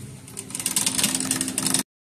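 Shopping cart rolling across a hard store floor, with a dense rattle of wheels and basket starting about half a second in and cutting off abruptly near the end.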